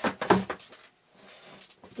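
A pastel board on a canvas panel knocked several times against a trash can, about three knocks a second, to shake off loose pastel dust. The knocks die away about half a second in, leaving faint handling noise.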